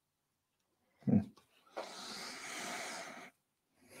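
A woman's short closed-mouth "mm", then a long breathy exhale lasting about a second and a half.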